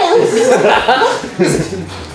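Men chuckling and laughing together, mixed with bits of talk.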